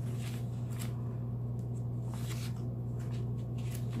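Paper catalog pages being turned, several faint rustles and flicks, over a steady low hum.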